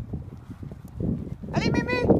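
Pony cantering on a sand arena, its dull hoofbeats passing close by. A short high-pitched voice call rings out near the end.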